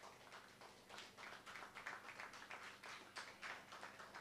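Faint applause from a small group of people: a light, uneven patter of hand claps.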